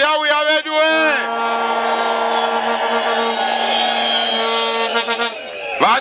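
A horn blown on one steady pitch for about four seconds over the noise of a rally crowd.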